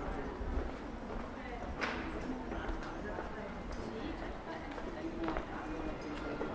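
Footsteps clicking on a stone-paved street, with indistinct chatter of passers-by. A couple of sharper heel clicks stand out, about two seconds in and again near the end.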